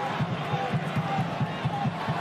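Stadium crowd noise with a quick, regular low beat of about five strokes a second running through it.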